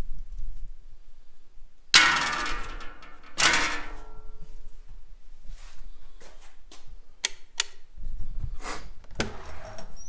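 Two loud metal clangs in a garage workshop, about two and three and a half seconds in, each ringing on briefly, then a few short sharp clicks and knocks as a house-style door is unlatched and opened near the end.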